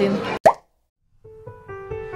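Room noise cuts off with a single short, sharp pop. After about half a second of silence, soft background music with plucked notes fades in.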